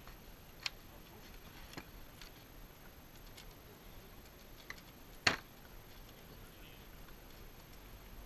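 Faint, scattered clicks and taps of long guns and a plastic ammunition box being handled on a loading table, with one louder sharp crack a little past halfway.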